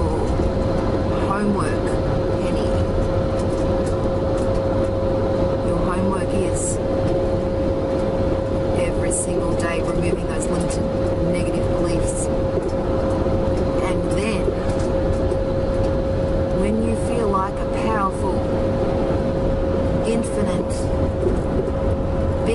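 Steady rumble of road and engine noise inside a moving car's cabin, with a constant steady tone running through it.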